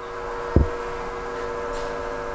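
Steady hum made of several steady tones, with one soft low thump about half a second in.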